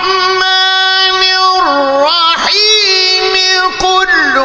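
A male reciter's high voice chanting a long melismatic line in Arabic, holding one high note, dipping and swooping in pitch about two seconds in, then holding the high note again.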